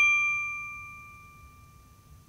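A single bright, bell-like ding from an intro logo animation, ringing out and fading away over about a second and a half.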